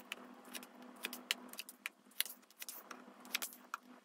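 Tarot cards being dealt and laid on a table: an irregular run of faint, light clicks and taps as the cards hit the tabletop and each other.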